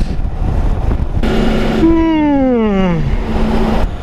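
Wind and road rush on the microphone of a motorcycle at speed. From about a second in until near the end a louder band of noise joins it, and a tone falls steadily in pitch by about an octave.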